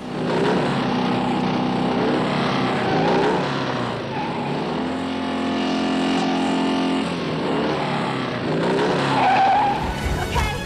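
Motorcycle engines running hard and revving, their pitch rising and falling, with tyre skids.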